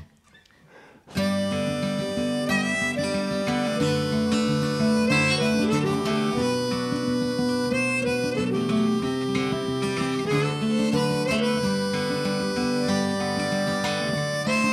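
A short laugh, then about a second in an acoustic folk intro starts: two acoustic guitars strummed steadily with a harmonica playing long, bending notes over them.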